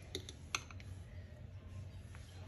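A few light clicks of a metal mixer beater knocking against the bowl as thick cream cheese icing is stirred by hand, the strongest about half a second in, over a faint low hum.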